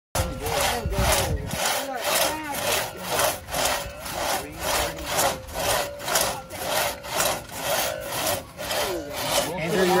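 Two-man crosscut saw cutting through a log, its teeth rasping through the wood in even back-and-forth strokes about two a second.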